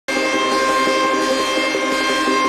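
Loud synthesized intro music for an animated title card: a held high tone over a lower line that shifts in pitch, starting abruptly.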